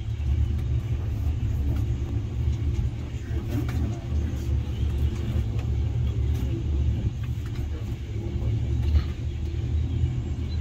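Steady low rumble inside a moving cable car cabin as it runs along its ropes, rising and falling a little in loudness without a break.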